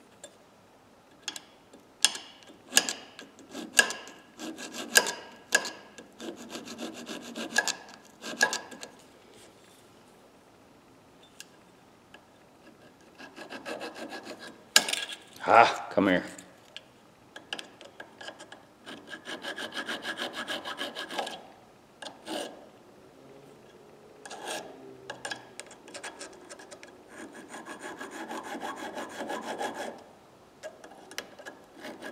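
Hand file scraping across the steel tip of a Phillips screwdriver in runs of short strokes with pauses between, reshaping the facets of a broken tip.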